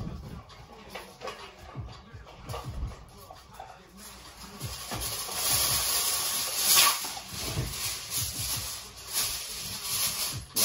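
Aluminum foil being pulled off its roll and crinkled: a crackling rustle that starts about halfway through and is loudest a little after the middle.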